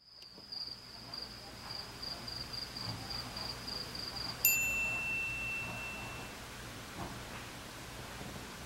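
A thin, high steady tone with a slight flutter, then a single bright ding about four and a half seconds in that rings out for under two seconds, over faint hiss: an added editing sound effect.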